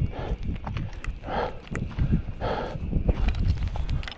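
Hiker's footsteps on a dirt trail, an uneven run of low thuds, with heavy breathing: three breaths about a second apart.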